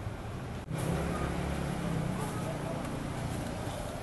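Motorbike engines running with a steady low hum amid people talking; the sound briefly drops out under a second in, then the engine hum is louder.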